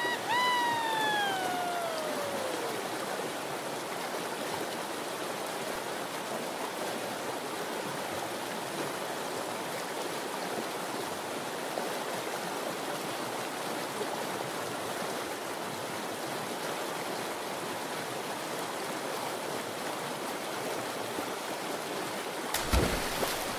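Steady rushing, splashing water, an even wash of noise with no rhythm. In the first few seconds a pitched, whistle-like tone glides downward and fades.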